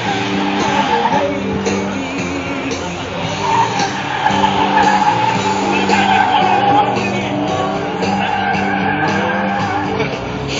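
A car on an autocross course, its tires squealing in the corners, the squeal wavering and strongest in the middle. Music with sustained, stepping notes plays throughout.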